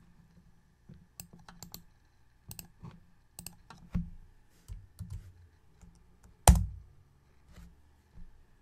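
Computer keyboard keystrokes and mouse clicks, scattered and irregular, with one much louder click about six and a half seconds in.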